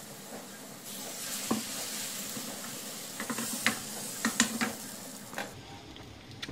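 Pancake batter sizzling in a hot frying pan, a steady hiss with a few light clicks and knocks over it. The sizzle drops away near the end.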